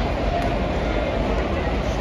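Steady murmur of a large baseball crowd chatting in the stands, with a low rumble underneath.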